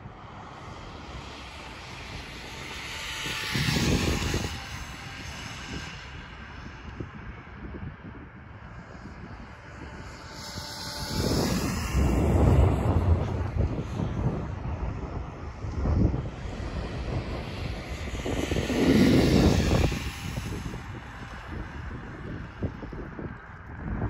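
Radio-controlled drift car's electric motor whining and its tyres running on asphalt, swelling loud three times as the car passes close and fading between passes.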